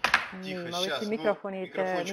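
A person talking over a web-conference audio feed, with a sharp click right at the start.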